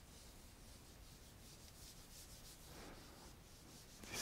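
Faint rubbing of a handheld eraser wiped across a whiteboard.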